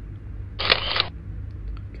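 A short mechanical click-and-rustle lasting about half a second, starting about half a second in, over a low steady hum.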